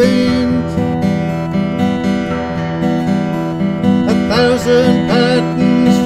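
Donal McGreevy OM acoustic guitar played in a steady accompaniment pattern. Near the end a voice holds a few wavering notes without words over it.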